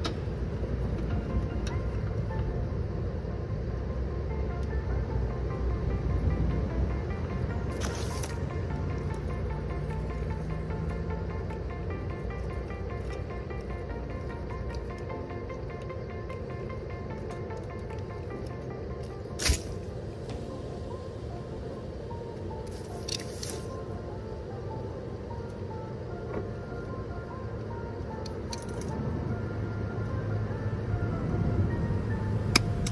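Background music with a steady, repeating pattern over a low rumble. A single sharp snap comes about two-thirds of the way through, with a few fainter clicks around it.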